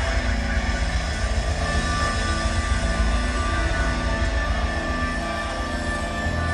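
A live rock band playing long held chords over a steady low bass line, with no sharp drum hits standing out.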